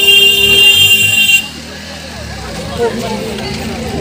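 A loud, steady horn blast that cuts off suddenly about a second and a half in, followed by quieter crowd chatter.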